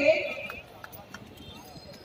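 A man's speaking voice trails off about half a second in. It leaves low, faint crowd background with a few light, irregular taps.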